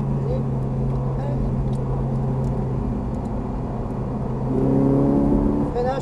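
Ferrari 458 Italia's V8 engine heard from inside the cabin, pulling in fourth gear under gentle acceleration with a steady note. About four and a half seconds in it gets louder and higher in pitch.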